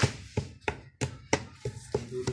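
Pestle pounding in a mortar, crushing incense and kamangyan resin into powder: sharp, evenly spaced strikes about three a second.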